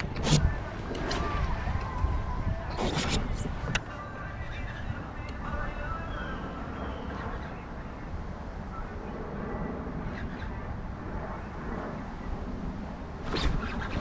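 Low, steady wind rumble on the camera microphone as the kayak sits on the open lake, broken by a few sharp clicks or knocks, a cluster of them about three seconds in and another just before the end.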